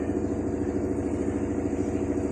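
Washing machine running with a steady motor hum.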